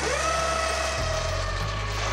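A powered hoist motor starting with a whine that rises quickly in pitch and then runs steadily with a hiss, lowering the weighed manatee in its sling.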